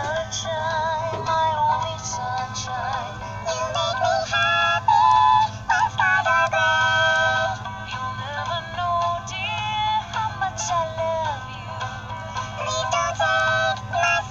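Animated plush chick toy singing its electronic song through a small built-in speaker: a thin, high synthesized voice with a chirpy tune and little bass, over a steady low hum.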